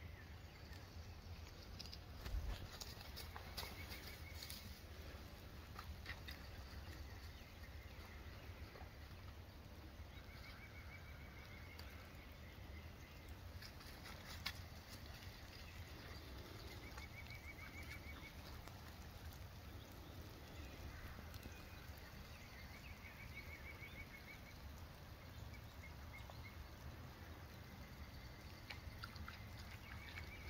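Quiet woodland ambience. A short, faint trilled bird call repeats every three to four seconds over a steady low rumble. There are two faint knocks, one about two and a half seconds in and one near the middle.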